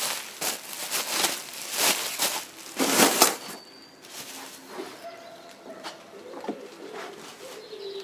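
Bubble wrap and plastic packing being handled and pulled out of a polystyrene box, crinkling in a run of short rustles for the first few seconds, loudest about three seconds in, then much quieter.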